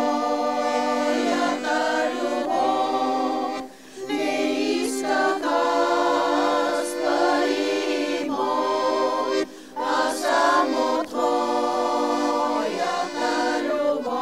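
A women's choir singing a Bulgarian old urban song in several-part harmony. There are short breaks between phrases about four and nine and a half seconds in.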